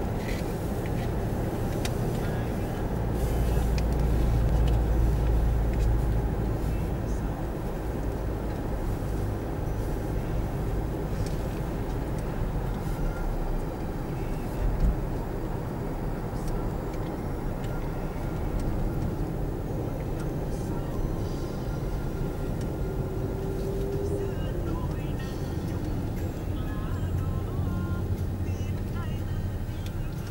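Steady road and engine rumble heard inside a car cabin at expressway speed. The low rumble swells for a few seconds early in the clip, and there is a single brief thump about halfway through.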